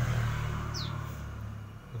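A small caged songbird gives one short, high chirp that falls in pitch, about three-quarters of a second in, over a steady low rumble.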